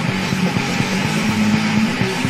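Heavy metal band playing an instrumental passage: a distorted electric guitar riff of sustained low notes over drums, with no singing.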